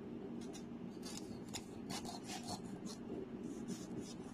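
Kitchen knife paring the skin off a beetroot: a string of short, soft scraping strokes, irregular and a few per second, over a low steady hum.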